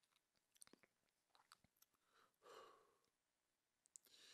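Near silence at a close microphone: faint scattered mouth clicks, and one soft breath drawn in about two and a half seconds in, before singing.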